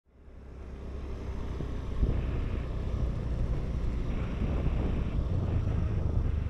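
Honda Beat scooter's small single-cylinder engine running with a steady low rumble, with wind buffeting the action camera's microphone. The sound fades in over the first second.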